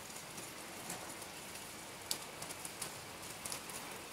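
Continuous rain falling: an even hiss with scattered drops ticking.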